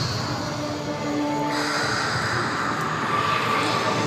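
Light-show soundtrack music played over outdoor loudspeakers, a dense wash of sound with a low rumble underneath and a few held notes about a second in.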